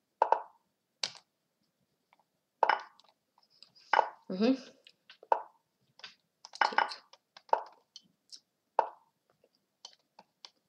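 Lichess move and capture sounds: a quick run of about ten short wooden clacks, one for each piece moved or taken in rapid play.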